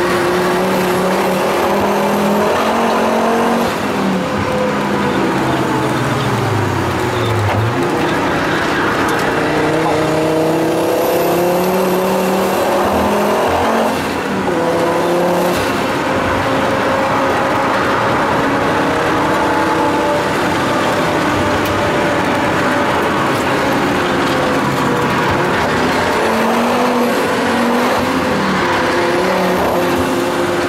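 Turbocharged inline five-cylinder engine of a 550+ hp Volvo 850 T5R heard from inside the cabin under hard driving, its note climbing and falling in pitch over several seconds, with brief drops in level about four seconds in and again around fourteen seconds.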